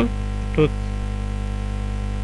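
Steady electrical mains hum, with one short spoken syllable about half a second in.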